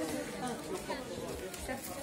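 Background chatter of several people talking at once, quieter than a voice close by, with no single speaker standing out.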